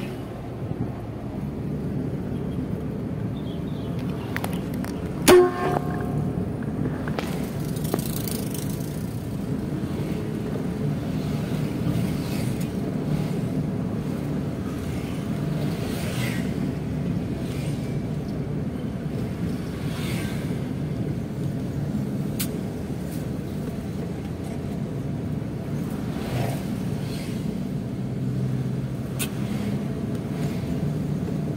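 Steady engine and road noise from inside a moving car, with one short, loud horn beep about five seconds in.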